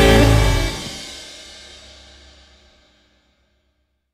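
The last chord of a blues-rock song: electric guitar and a cymbal crash held for under a second, then ringing out and fading away to silence within about two more seconds.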